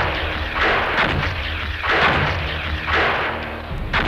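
Cannon fire: a series of heavy blasts with a deep rumble, about one a second.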